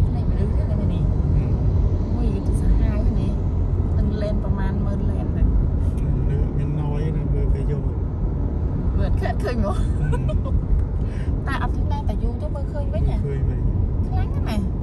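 Car driving along a road, a steady low engine and road rumble, with people's voices talking over it on and off.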